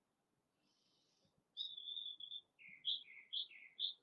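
Faint songbird singing: a held whistled note, then a run of short notes alternating low and high, about two a second.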